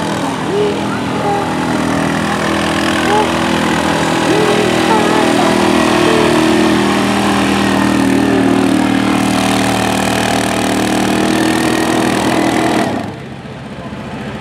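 Suzuki KingQuad 750 ATV's single-cylinder engine running hard under load as it pulls a weight sled, a steady loud drone. The engine note drops off sharply near the end as the pull finishes.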